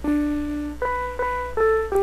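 Electronic keyboard music: a melody of sustained notes, each changing to the next about every half second, over a low steady hum.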